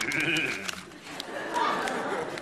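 Studio audience laughing, in two bursts.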